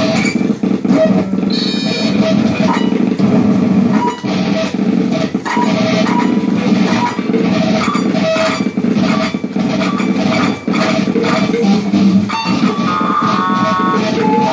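Electric guitar and electronics playing live, loud and dense: a thick low drone under scattered short pitched blips and clicks, with a cluster of steady high tones near the end.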